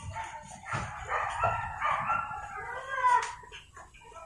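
A dog howling and whining in drawn-out calls that waver up and down in pitch, fading out a little after three seconds in, with a few light clicks alongside.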